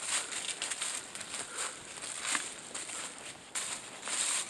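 Footsteps crunching through dry leaf litter on a forest trail at a walking pace, a crisp crunch about every half second.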